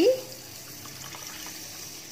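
Water pouring in a steady stream into a pot of washed rice, filling it with the measured water for cooking.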